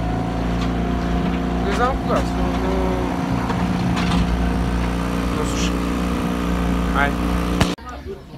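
A small boat's motor running at a steady, even pitch, with a few short bits of voice over it; the sound cuts off abruptly near the end.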